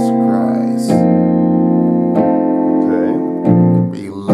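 Piano playing slow, sustained chords in a gentle gospel style, with a new chord struck about every second, four in all.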